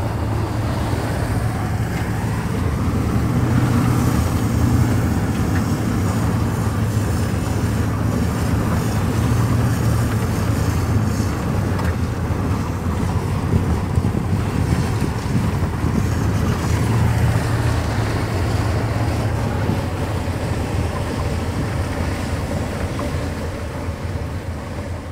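Steady low engine and road rumble inside a moving vehicle's cabin, swelling and easing slightly as it drives.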